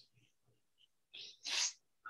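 A person's short, sharp burst of breath about a second and a half in, like a stifled sneeze, just after a fainter hiss.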